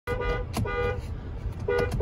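Car horn honking three short times, a two-note horn sounding each time, heard from inside a car cabin.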